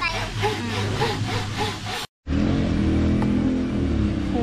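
Hand saw cutting through a wooden pole in quick, even strokes, about three a second. After a sudden break, an engine runs steadily.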